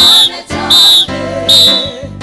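Gospel choir and band music, cut through by three loud, shrill whistle blasts in time with the beat, each short and ending sharply, about three quarters of a second apart. A singing voice and band carry on underneath.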